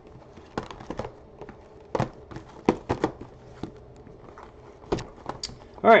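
Cardboard trading-card hobby boxes being handled and set down on a tabletop: a string of irregular knocks and taps, a few of them louder, about a second apart.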